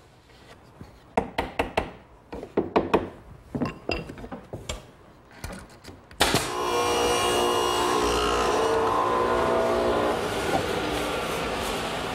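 A hammer tapping a nail into a redwood trim strip: about a dozen light strikes in short groups of two or three. About halfway through, steady background music with held chords comes in.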